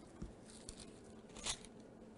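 Faint rustling and flicking of thin Bible pages being turned, a few brief strokes with the clearest about one and a half seconds in.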